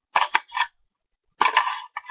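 Hard plastic clicks and clatter from a toy water pistol being worked in the hand: a few quick clicks in the first moment, then a longer rattle near the end.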